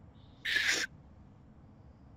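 A crying woman's single short, breathy sob, lasting under half a second.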